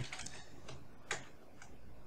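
A few separate computer keyboard keystrokes, faint, sharp clicks with the loudest about a second in.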